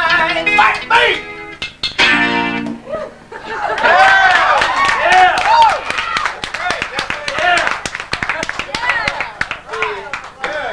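An acoustic guitar and a singing voice end a song in the first three seconds or so. Then several voices call out, whoop and talk, with some clapping.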